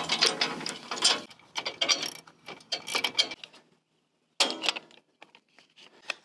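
Metal hand tool ratcheting in quick runs of clicks for about three and a half seconds, then a short clicking rattle about four and a half seconds in.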